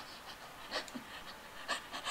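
A person breathing in a few short, faint, breathy puffs close to the microphone.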